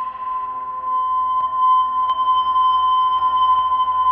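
Ambient drone from a Gretsch electric bass played through a Eurorack modular chain of a Make Noise Mimeophon delay and a Joranalogue Filter 8: one sustained steady high tone with fainter tones layered around it, swelling slightly louder about a second in.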